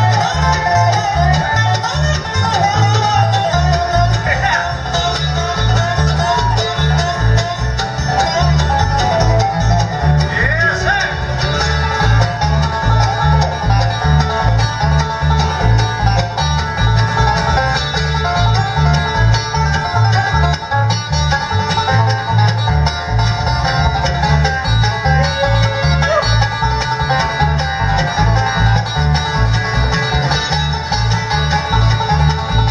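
Live bluegrass band playing banjo, mandolin, acoustic guitar and upright bass, with a steady bass line pulsing underneath.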